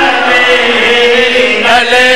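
A man's voice chanting into a microphone: a zakir's recitation, sung as one long held note, with a new phrase starting near the end.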